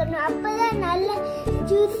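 Background music with a child's voice over it.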